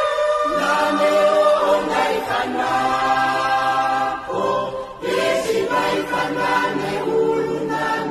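Choir singing an Oshiwambo gospel song in harmony, with long held notes and a short break about five seconds in.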